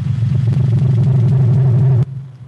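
A loud, deep rumbling swell from an intro sound effect, held steady, then cut off abruptly at the end.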